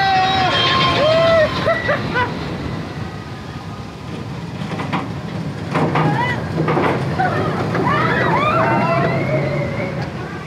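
Riders on a Big Thunder Mountain Railroad mine-train roller coaster yelling and whooping over the rumble of the train on its track. Near the middle a coaster train runs by with its riders shouting.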